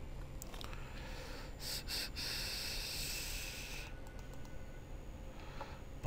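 A person breathing close to the microphone: two short puffs of breath, then a longer exhale lasting nearly two seconds, over a faint steady low hum.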